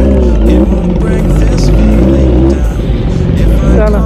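Kawasaki Z900's inline-four engine and exhaust running steadily while the bike is ridden, a loud continuous low drone.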